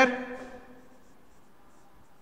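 Dry-erase marker writing on a whiteboard, faint strokes, after the tail of a man's drawn-out spoken word fades out in the first half second.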